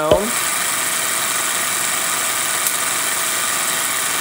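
Homemade Van de Graaff generator running: its motor and rubber belt whir steadily with a high hiss, and one faint tick comes a little past the middle.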